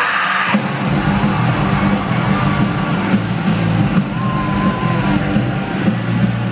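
Rock band playing live, heard from the audience in a large arena: electric guitar and voice, with drums and bass coming in hard about a second in, and yelling over the music.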